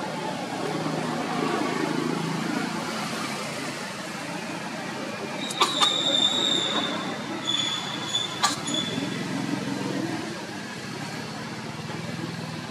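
Outdoor background of a motor vehicle running, with faint voices mixed in. Around the middle come a few sharp clicks and several brief high squeaks.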